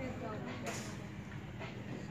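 Shop ambience: a steady low hum with faint background voices, and a brief rustle about two-thirds of a second in.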